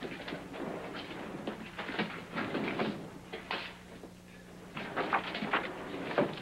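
Irregular knocks, scrapes and clatters of a room being searched, with drawers, doors and objects being moved, over a faint steady hum.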